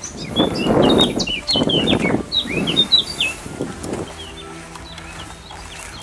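Wind gusting against the camera microphone, with small songbirds chirping repeatedly over it for the first three seconds or so. In the last two seconds a steady low held chord of background music comes in.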